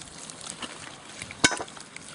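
Quail frying in a pan: a steady, faint sizzle with fine crackles of spitting fat, and one sharp click about one and a half seconds in.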